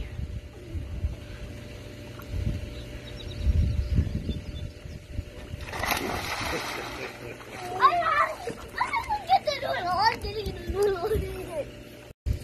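A child jumping into a swimming pool: one splash about six seconds in, followed by a person's voice.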